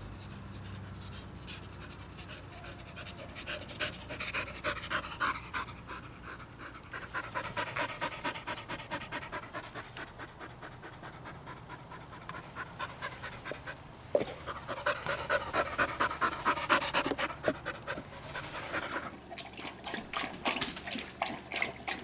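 A young black Labrador retriever panting fast, in several spells, loudest about two-thirds of the way through. There is a single sharp click about fourteen seconds in.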